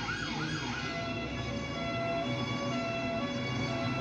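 A siren sounding in fast up-and-down sweeps, about three a second, fading out about a second in as held synth notes and a low bass of a UK drill track's intro take over.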